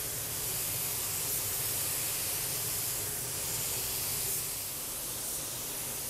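Compressed-air paint spray gun hissing steadily as it lays down a coat of RM Diamant Top clear coat.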